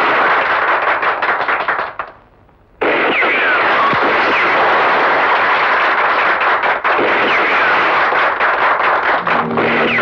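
Crowd applauding and cheering, with a few whistles. The applause breaks off for under a second about two seconds in, then comes back just as loud and keeps going.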